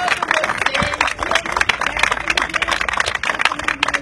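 A small group applauding: many hands clapping fast and unevenly, with voices calling out over it.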